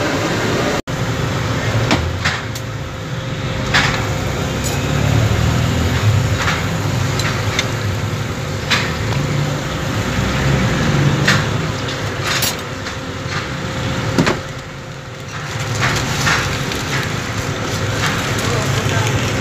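Busy street ambience at a charcoal kebab grill: steady traffic rumble and a faint steady hum, with scattered sharp clicks and knocks of metal skewers and food being handled and wrapped.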